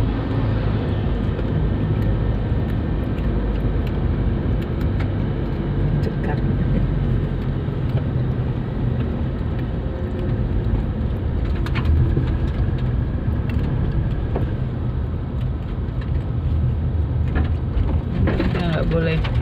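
Car driving on a smooth asphalt road, heard from inside the cabin: a steady low rumble of engine and tyres.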